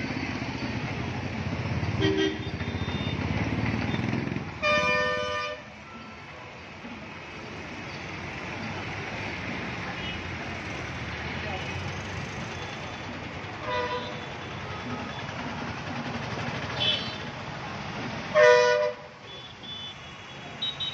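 Busy road traffic: engines running close by, heaviest in the first few seconds, and vehicle horns honking in several short blasts, a long one about five seconds in and the loudest near the end.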